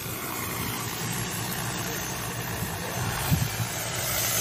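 Steady hum of an agricultural seeder drone's propellers, with a brief thump a little after three seconds in.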